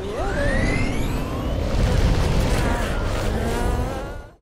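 Film sound effects of an avalanche: a deep, heavy rumble of sliding snow, with a rising whine over the first two seconds.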